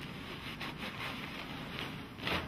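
Soft rustling of a sterile wrapper as the flaps of a wrapped basin set are unfolded: several faint crinkles over a low, steady background hiss.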